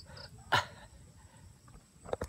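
A dog's single short, sharp bark, falling in pitch, about half a second in.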